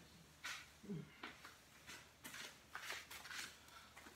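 Near silence with faint, scattered rustles and light taps: a person moving about the room and fetching a shopping bag, out of view.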